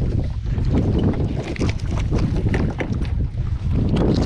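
Wet nylon trammel net being hauled by hand over the side of a small boat, with many short, scattered rustles and splashes as it comes aboard. Wind buffets the microphone with a steady low rumble.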